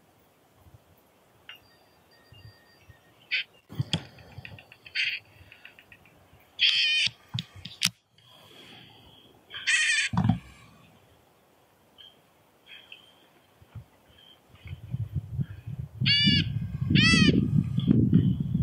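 A white-breasted nuthatch held in the hand gives short, nasal calls in scattered bursts, loudest about seven and ten seconds in and twice more near the end. Clicks and handling noise fall between the calls, and a low rumble builds over the last few seconds.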